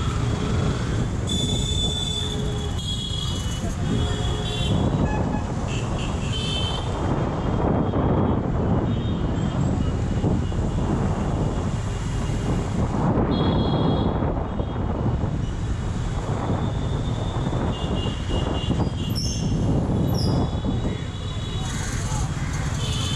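Motorcycle riding through dense city traffic: steady engine and road rumble with wind on the microphone, while vehicle horns honk repeatedly, in several spells of a few seconds each.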